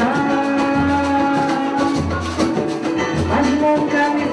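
Live samba: a woman singing long held notes into a microphone over a percussion group, with a deep drum stroke about once a second under the band.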